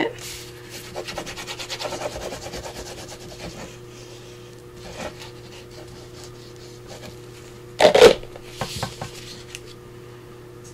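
Liquid glue squeezed from a fine-tip plastic squeeze bottle and drawn across paper, a rapid rasping crackle for the first few seconds that then fades. About eight seconds in comes a brief loud rustle of paper being handled.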